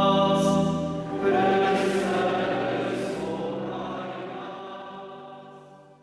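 Background choral music: a choir holds a sung chord, starts a new one about a second in, and fades slowly away.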